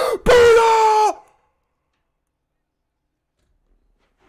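A man's loud, drawn-out celebratory yell of "yeah", held on one pitch and cutting off about a second in.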